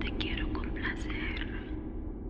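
A whispered voice for about the first second and a half, over a low musical drone that slowly fades.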